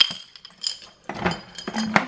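Metal jewelry and trinkets clinking against one another and against a glass jar as a hand rummages inside it. There are several sharp clinks with a brief ringing after each.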